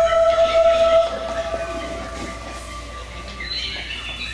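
Train whistle sound effect played over the PA: one long tone that is strongest for about a second, then fades away over the next two.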